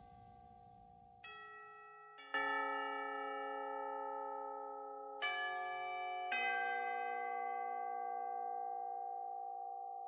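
Soft ambient background music of sustained bell-like chords, with new chords struck about a second in, at about two, five and six seconds, each ringing on and slowly fading.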